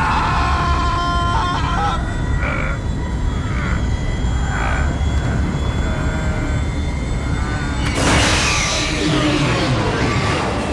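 Film sound effects of a spaceship at runaway speed: a loud, steady deep rumble with a few short strained vocal sounds. About eight seconds in, a sudden loud rushing screech breaks in as the emergency stop lever is pulled, then fades.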